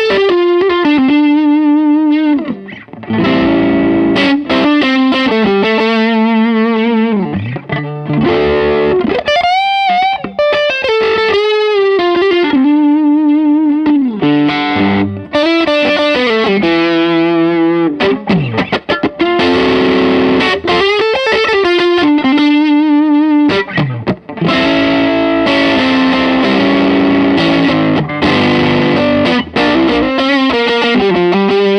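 Electric guitar played through a CMATMODS Brownie overdrive pedal (a licensed BSIAB, Marshall-style circuit) with its gain turned down for a milder overdrive. It plays lead phrases of held notes with wide vibrato and upward string bends, with brief breaks between phrases.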